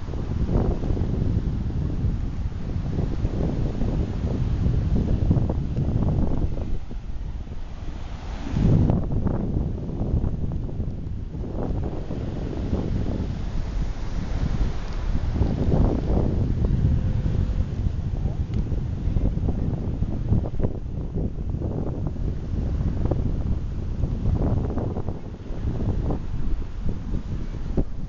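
Wind buffeting the microphone of a handheld camera in uneven gusts, a low rumble, with one strong gust about nine seconds in. Waves wash on the beach beneath it.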